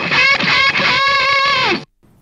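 Electric guitar with a spring-loaded floating tremolo playing a short solo phrase: a run of quick notes, then one note held for about half a second that slides down in pitch and is cut off abruptly just before the end.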